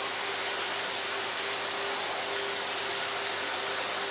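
Steady hiss of water running through a fish spa foot trough, with a faint steady hum underneath.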